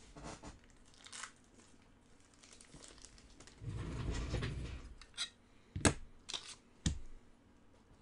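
Packaging being handled: about a second of crinkling and rustling around the middle, then three sharp clicks or taps close together.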